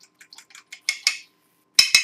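A metal fork beating eggs in a small glass bowl: a run of quick light clicks of metal against glass, a short pause, then two louder clinks near the end.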